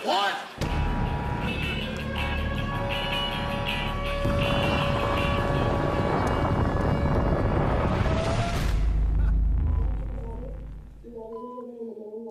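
Bomb explosion: a sudden blast about half a second in, then a long, deep rumble that dies away around ten seconds in, with music over it.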